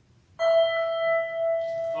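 A single held musical note, steady in pitch, starting about half a second in after a silence: the starting pitch given just before a chanted verse is sung.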